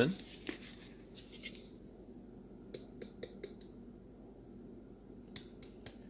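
Small plastic clicks and taps from a cinnamon shaker with a flip-top cap being handled and shaken over a bowl of oatmeal: a few sharp clicks, four of them about three seconds in and three more near the end.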